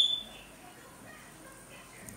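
A short, sharp high-pitched tone right at the start, then faint background music.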